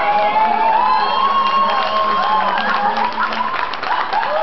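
Live amateur voices singing a wavering melody, with one note held in the first half. Crowd noise and cheering lie beneath, and scattered clapping comes in the second half.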